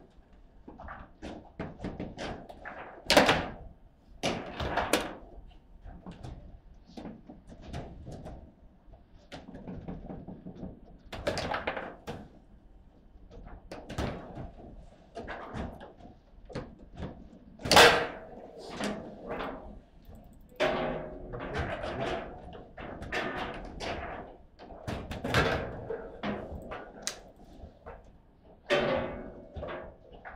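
Foosball table in play: a rapid, irregular run of knocks and clacks as the ball is struck by the plastic players and the rods move. Two loud sharp cracks stand out, one about three seconds in and one just past the middle.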